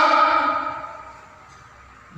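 A man's drawn-out, sing-song voice tailing off in the first second, then quiet room tone.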